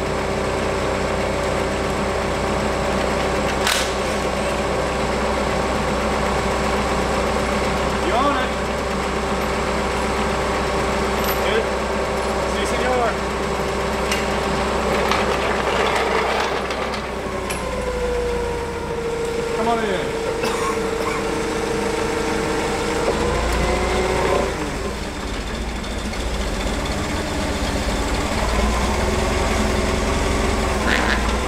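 Clark forklift engine running at idle, with a steady whine that comes in a little past the middle, holds for about five seconds and shifts in pitch as the engine note changes.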